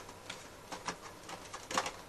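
Cardboard webcam box being handled and its inner tray slid out: a few short, soft scrapes and taps of cardboard packaging, the loudest near the end.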